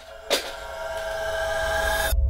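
Dramatic horror-style sound effect: a sudden hit about a third of a second in, then a rising, swelling drone of hiss with steady tones through it, cut off abruptly at the end.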